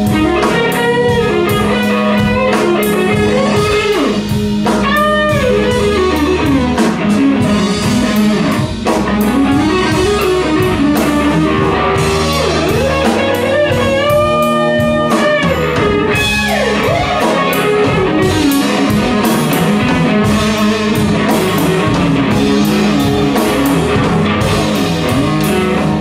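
Live blues band playing a slow blues instrumental passage: an electric guitar leads with bent notes over keyboard, bass and drums.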